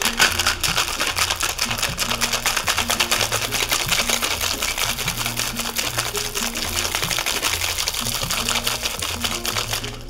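Ice rattling fast and continuously inside a two-piece metal cocktail shaker (tin on tin) shaken hard to pulverize muddled fresh pineapple, over background music with a steady bassline.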